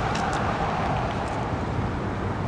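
Steady outdoor background noise, an even low rumble and hiss, with a few faint clicks.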